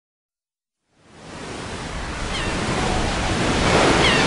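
Ocean surf sound fading in about a second in and swelling steadily, the intro of a recorded song, with two faint short falling tones over it.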